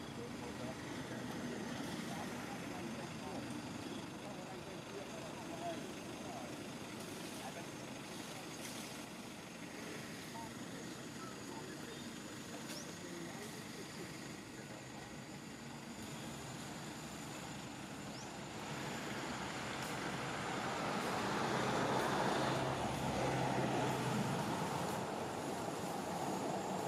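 A motor vehicle passing by: a steady background rumble that grows louder about two-thirds of the way through and is loudest near the end.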